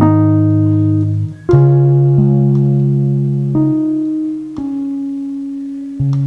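Keyboard playing slow, sustained chords, each fading gently before the next is struck, with a few chord changes over the span.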